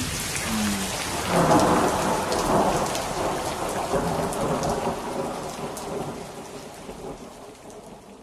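Rain falling steadily with a roll of thunder swelling about a second and a half in, the storm then fading away toward the end; a rain-and-thunder effect closing out the song's track.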